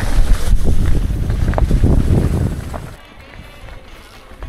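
Wind buffeting the camera microphone over a mountain bike's tyres rolling fast on a leaf-strewn dirt trail: a loud low rumble with small knocks and rattles, which drops off sharply about three seconds in.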